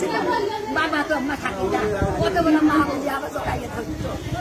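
A woman wailing and crying out in grief, her voice rising and falling without a break, with other voices around her.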